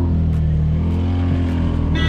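Auto-rickshaw's small engine running at a steady speed under way, heard from inside the open cabin as a low, even drone.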